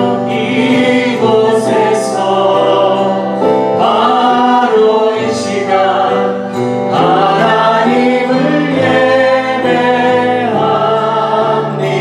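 A group of voices singing a Korean contemporary worship song together, with musical accompaniment.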